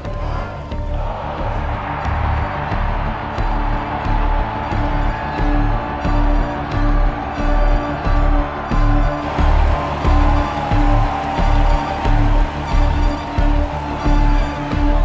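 Background music with a steady low pulse, a little under one and a half beats a second, over held tones, the pulse growing louder about halfway through.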